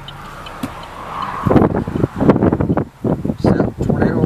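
Low, even road noise inside a car, then from about a second and a half in, indistinct talking.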